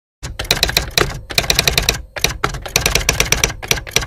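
Typewriter sound effect: rapid key strikes in quick runs, broken by two short pauses about one and two seconds in.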